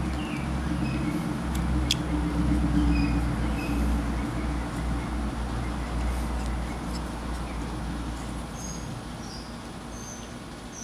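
A motor vehicle engine running nearby with a steady low rumble that fades away over the last couple of seconds, while small birds chirp in short repeated notes. Two sharp clicks come about two seconds in.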